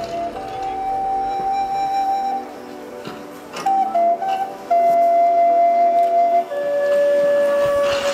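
Live music: a slow melody of a few long held notes on a flute-like wind instrument, pausing briefly about halfway through, then settling on a lower note near the end.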